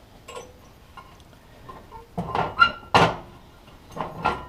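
Metal lid of a Dutch oven clinking and knocking against the stove grate as it is picked up with an oven mitt: a few faint clicks, then a run of clanks with a short ring, the loudest near the end.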